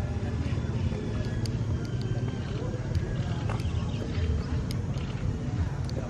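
Indistinct voices of people talking in the background over a steady low rumble, with a few sharp clicks scattered through.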